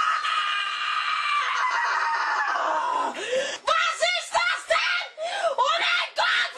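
A boy screaming: one long scream held for about three seconds and sliding down in pitch, then a run of short, rapid shrieks that swoop up and down.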